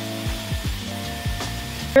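Background music with held tones and a steady deep beat, over the even airy hiss of a hot-air styling wand blowing on hair.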